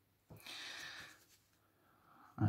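A carving knife paring a thin shaving from the edge of a wooden spoon: one soft, short scraping cut lasting under a second.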